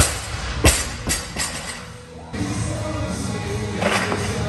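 A loaded barbell with rubber bumper plates dropped onto the lifting platform: a sharp impact, a louder one just after, then two smaller bounces dying away, over loud gym music.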